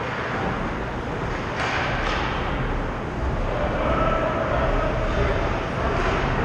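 Indoor ice hockey rink ambience during play: a steady rumble and hiss of the arena, with two sharp scrapes or clacks about one and a half and two seconds in, and faint distant voices from about halfway.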